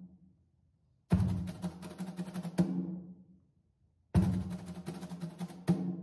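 Drum kit played as a solo: two short, matching snare-drum phrases, each opening with an accented hit, running into quicker strokes and closing on a second accent, with short silences between them.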